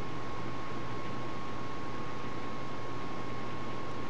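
Steady hiss of background room noise with a faint, thin, steady high tone running through it; nothing else happens.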